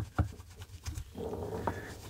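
A knitted cloth rubbing on a fingertip: a faint, soft rustle of fabric on skin, after two short clicks at the very start.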